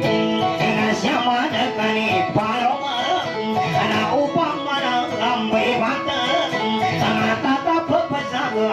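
Live dayunday music: a guitar played in a busy plucked melody, with a singer's voice over it.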